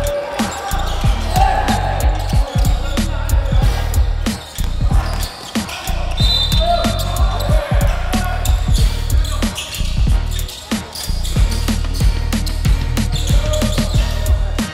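Background music with a heavy, steady bass beat, over a basketball bouncing on a hardwood court with short sharp knocks throughout.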